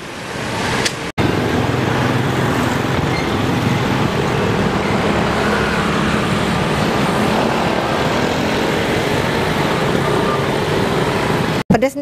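Steady street traffic noise, with motor scooter and car engines passing close by. The sound breaks off sharply about a second in and again just before the end.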